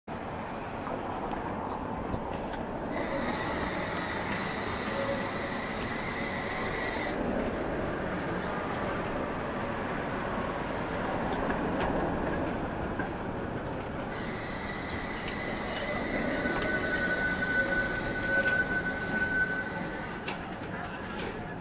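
Tatra KT4D tram running on street track over a steady rumble. Its wheels squeal in a high, steady tone for about four seconds, then again through the last six seconds, with a second, sharper squeal joining near the end.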